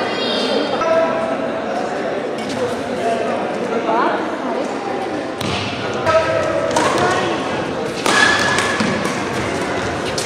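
Voices calling out and talking in a large indoor sports hall, with a few sharp knocks during badminton play.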